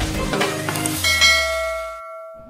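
Electronic intro sound effects over a low drone: a few quick clicks, then a bell-like chime struck about a second in that rings and fades out.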